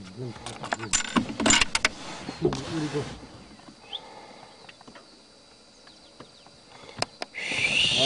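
Hushed voices with a few sharp clicks in the first few seconds, then a lull; near the end a loud, even rushing noise starts suddenly.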